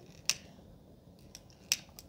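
A hand-held lighter being struck to light a firecracker's fuse: a few short, sharp clicks spread over two seconds, with quiet between them.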